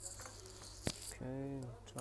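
Light handling rustle, then a single sharp tap about a second in as a Samsung Gear smartwatch is set down on the workbench, followed by a short hummed vocal filler from the technician.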